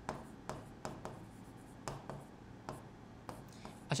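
A pen writing on a board: a string of short, irregular taps and scratches as two words are written and underlined.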